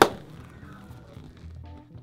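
A single sharp knock as a hand raps a hard plastic catcher's leg guard, dying away quickly, over soft background music.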